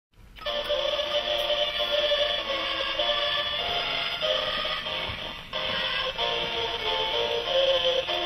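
Animated Christmas caroler display playing a song through its small built-in speaker after its push button is pressed: tinny electronic singing with music, starting about half a second in.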